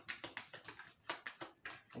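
A deck of oracle cards being shuffled by hand: a quick, even run of soft card clicks, about seven a second.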